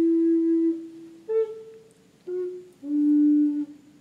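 A flute playing a slow melody of about four held notes, each a second or less long, stepping up and down in pitch with short gaps between them.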